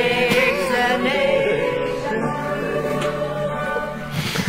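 A hymn sung by voices with a wavering vibrato, accompanied by a digital piano holding steady notes beneath.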